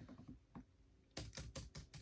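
Faint typing on a laptop keyboard: a few scattered key taps, then a quick run of about half a dozen keystrokes in the second second.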